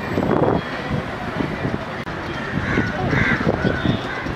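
A bird calling repeatedly in the second half, short calls a few to the second, over indistinct background voices.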